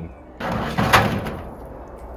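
A single sharp knock about a second in, over a short rush of noise, as the sheet-steel smudge pot is handled at its opening while being lit.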